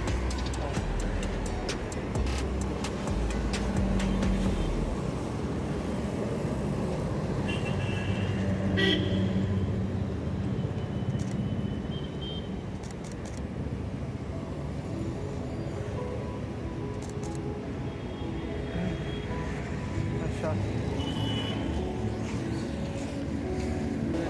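Busy city road traffic: a steady rumble of engines and tyres, with a few short vehicle horn toots.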